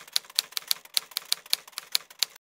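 Typewriter key-strike sound effect: a quick, even run of clacks, about six a second.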